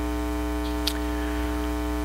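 Steady electrical mains hum with a stack of overtones, unchanging throughout, with one faint click a little before a second in.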